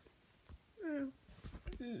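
A brief voiced call about a second in, falling in pitch, followed near the end by a murmured 'mm-hmm'.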